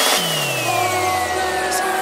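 Electronic deep house music at a transition: the drum beat drops out just as a rising synth sweep peaks, then the sweep glides back down while a low bass tone slides steeply downward under sustained chords.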